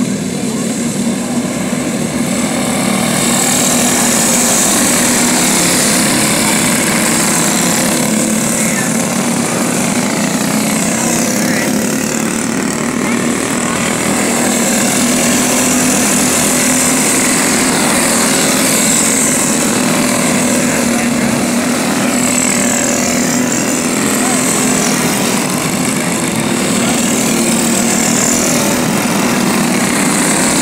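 Several small racing-kart engines running at speed as a pack of karts goes through the turn. Their high whines rise and fall in pitch as karts pass close by and accelerate away, over a steady lower engine note.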